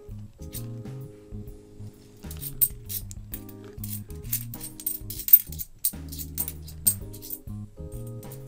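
Light metallic clinks of 50p coins knocking together as they are slid one by one through the hand, coming quickly from about two seconds in until near the end, over steady background lounge music.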